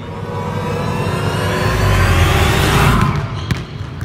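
Edited-in sound effect of an engine revving up, rising in pitch and growing louder, then cutting off abruptly about three seconds in.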